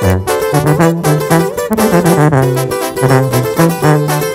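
Live band playing the instrumental part of a corrido bélico: a sousaphone carries a bass line of short held notes that step up and down, under strummed acoustic guitars and a trumpet.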